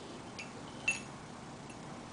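Two light glass clinks as a small glass beaker knocks against the rim of another glass beaker while pouring into it; the second clink is louder and rings briefly.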